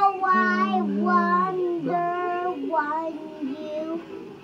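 A young boy singing unaccompanied, a string of about six held notes with no clear words.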